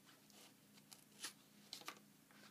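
Faint handling noise with a few soft plastic clicks in the second half: small adhesive cable clamps being opened and fitted to take the extruder cable of a 3D printer.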